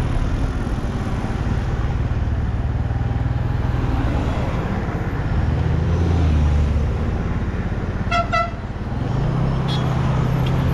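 Steady low engine and wind rumble from a moving vehicle, swelling briefly about six seconds in. A horn gives two short beeps just after eight seconds.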